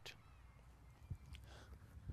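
Near silence: faint outdoor background with one soft tap about a second in.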